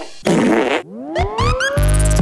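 A short comic fart sound effect, followed by a rising sweep that leads into upbeat outro music near the end.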